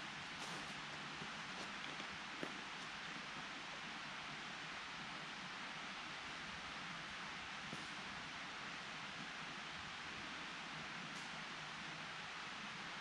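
Steady, even hiss of outdoor forest ambience, with a few faint crackles in the first few seconds from footsteps on dry leaf litter.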